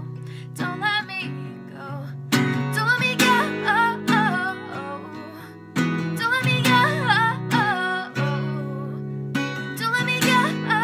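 A steel-string acoustic guitar strummed in chords with a woman singing over it, the strums coming in harder about two and a half seconds in and again near six seconds.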